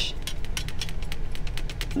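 Watercolour brush scrubbing and mixing paint in a palette's plastic mixing well, a fast run of small scratchy ticks from the bristles and ferrule against the tray, over a low steady hum.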